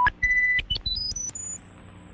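Electronic beep tone stepping upward in pitch after a click at the start. It jumps higher every fraction of a second, then settles into a high held whistle for the second half.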